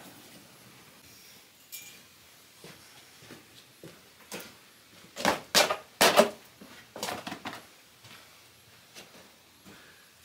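Stones and rubble being picked up and handled on a dirt floor: scattered light knocks and scuffs, three sharp loud knocks a little past halfway, then a quick patter of smaller knocks.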